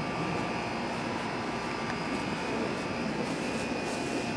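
Steady background noise: an even rushing hiss with a faint steady hum, unchanging throughout.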